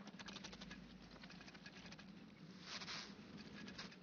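Faint, rapid clicking and tapping of a stick insect's legs on carved stone, a film sound effect. The clicks thin out after the first second or so, and a brief soft rustle comes about three seconds in.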